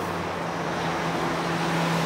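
Steady road traffic noise with a low, even engine hum, from vehicles on the road below.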